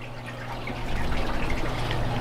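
Water trickling from aquarium filters over a low steady hum, growing louder about half a second in.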